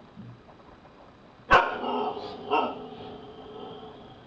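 Siberian husky barking twice. The first bark is sudden and loud about a second and a half in, the second comes about a second later, and each trails into a held, pitched note.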